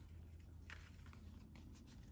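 Near silence with faint rustling of old paper greeting cards being picked up and handled, a few light crinkles.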